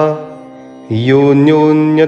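A man's voice chanting a Sanskrit verse in a melodic recitation with long held notes. It breaks off just after the start and resumes just before the one-second mark.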